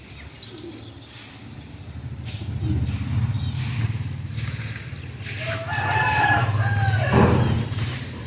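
A single long bird call lasting nearly two seconds, starting about five and a half seconds in, over a steady low rumble.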